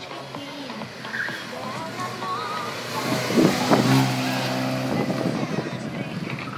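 A car's engine revving hard under acceleration through a slalom course. It is loudest about three and a half seconds in, then holds a steady high-revving note for about a second before fading.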